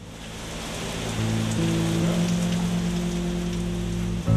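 Heavy rain falling, a dense steady hiss that builds in loudness, with sustained low music chords coming in about a second in.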